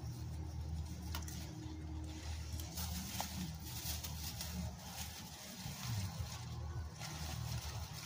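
A steady low mechanical hum runs throughout, with soft crinkling of plastic grocery-bag strips as they are tied around a young tree's stem.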